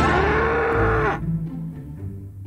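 A cow mooing once: one long call that rises a little, holds, then drops and cuts off just over a second in. Low sustained string music runs beneath it.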